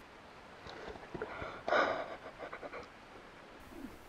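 A person's short breathy laughter as a red howler monkey climbs onto her back, with the loudest breath a little before two seconds in.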